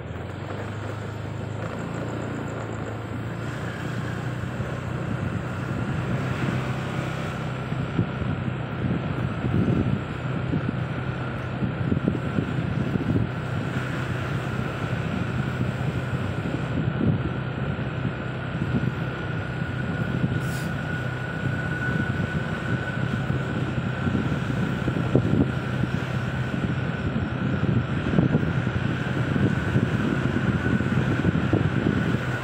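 A car driving slowly, heard from inside the cabin: a steady low engine hum under tyre and road noise, with a faint steady high whine running through it.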